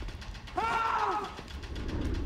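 Rapid, evenly spaced mechanical clicking, like a ratchet, with a brief rising-then-falling tone about half a second in.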